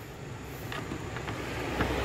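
Faint light clicks and rustle of a plastic wiring-harness connector and its wires being handled, with a low rumble building near the end.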